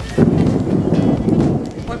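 A loud rumble of thunder, starting suddenly just after the start and dying away after about a second and a half.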